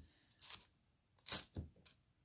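Brief scratchy rustles from handling a foam needle-felting pad and wool roving: a faint one about half a second in, a louder crunch-like one a little past a second in, then a weaker one.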